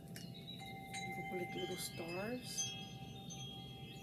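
Chimes ringing: several bell-like tones at different pitches, struck at irregular moments, each ringing on for a second or more.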